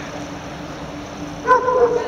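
A dog gives one short, high-pitched whine or yelp about one and a half seconds in, over a steady low background hum.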